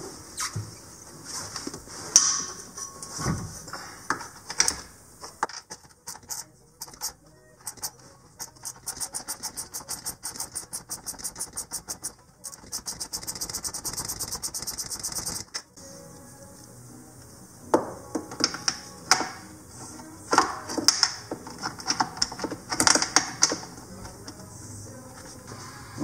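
Ratchet wrench clicking in an even run while backing out bolts, then a faster, denser run of clicks. Scattered knocks of tools and parts follow later.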